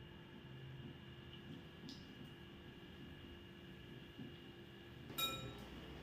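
Quiet kitchen room tone with a faint steady hum. About five seconds in comes a single metallic clink that rings briefly: a utensil knocking against the pan as the wire whisk is taken up for mashing.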